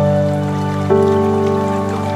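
Slow, calm lo-fi music of long held notes, with a new lower note coming in about a second in, over a soft rain-like patter.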